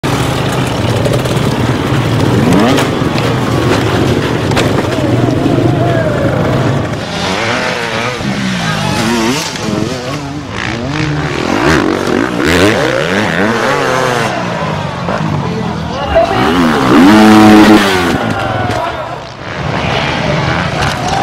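Dirt bike engines revving and blipping over and over, pitch rising and falling, across several short clips, with people's voices mixed in. The loudest stretch, near the end, lasts about a second.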